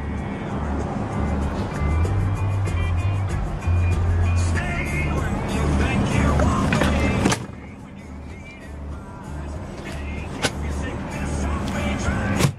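Music with a steady pulsing bass beat. A sharp knock comes about seven seconds in, after which the music carries on noticeably quieter, with a single click a few seconds later.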